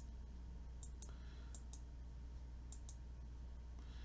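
Faint computer mouse-button clicks: three quick pairs of clicks about a second apart, over a steady low hum.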